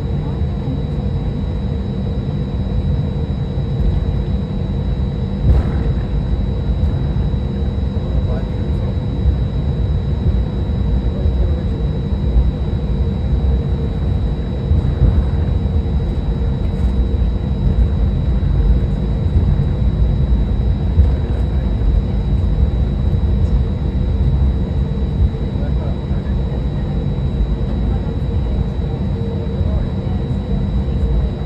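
Cabin noise inside an Airbus A320-200 taxiing: a steady low rumble from the jet engines at taxi power, with a steady hum and a faint high whine running through it.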